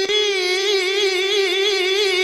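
A man's voice in melodic Quran recitation (tilawah), holding one long high note that wavers up and down in ornamented pitch, with a short catch right at the start.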